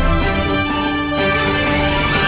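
News-bulletin intro theme music: loud, with held chords whose notes change about twice a second.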